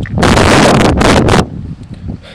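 Wind buffeting the microphone in a loud gust lasting just over a second, with a brief dip in the middle.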